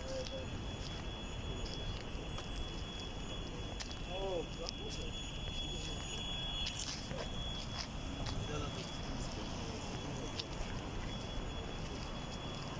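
Steady outdoor city background: the low hum of distant traffic, with faint voices and one short voice about four seconds in.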